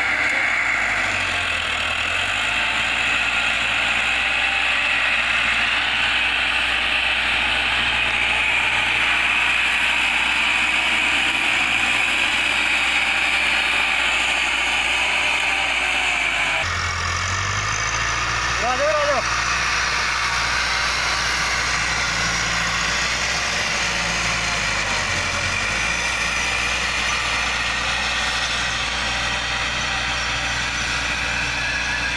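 Farm tractor's diesel engine running steadily under load as it pulls a tine cultivator through ploughed soil. The engine sound changes abruptly a little over halfway through, and a short rising-and-falling call is heard soon after.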